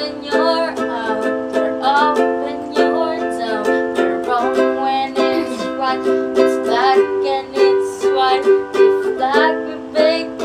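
A ukulele strummed in a steady rhythm through a repeating four-chord progression, with girls' voices singing a pop melody along with it.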